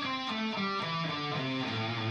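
Gibson SG electric guitar playing single notes down the A minor pentatonic scale in its first position, about four notes a second, stepping down to a held low A near the end.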